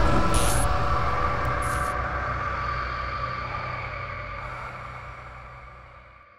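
Dark horror sound design under a title card: a low rumbling drone with a held high tone, fading steadily away. There are two short hissing bursts in the first two seconds.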